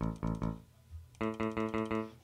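Sampled electric guitar from the Presence XT 'Strato Guitar' preset, played as short, clipped notes that die away quickly. Three quick notes, then a pause, then about five more in a row at roughly five a second.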